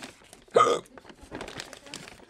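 A single short, hiccup-like vocal burst about half a second in, followed by faint rustling as a paper bag is handled.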